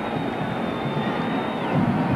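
Stadium crowd noise, steady, with a thin high whistle-like tone held for about a second and a half.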